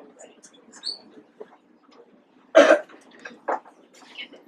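Low murmuring and whispering from a roomful of children, broken about two and a half seconds in by one loud, short burst of sound close to the microphone and a smaller one about a second later.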